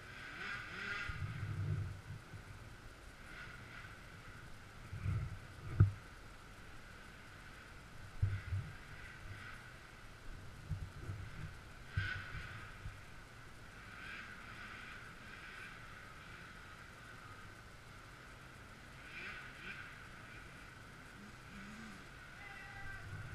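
Faint, muffled dirt bike engine sound, with a few dull thumps, the sharpest about six seconds in.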